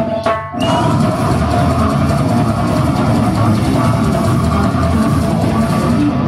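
Brutal death metal band playing live, with distorted guitars and a drum kit. The band stops briefly about half a second in, then comes back at full volume.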